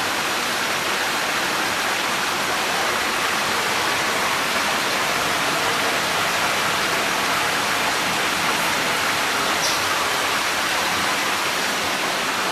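Water pouring and splashing steadily into a live-fish holding tank, an even rushing hiss with no let-up.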